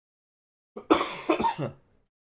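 A man coughing: a short run of several quick coughs starting a little under a second in.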